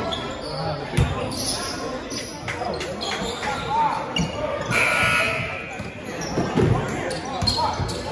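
A basketball bouncing on a hardwood gym floor during play, with a sharp thud about a second in and more knocks later, amid players' voices echoing in a large gym.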